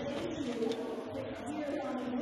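An indistinct voice, wavering in pitch, over the steady noise of a crowd in a large hall.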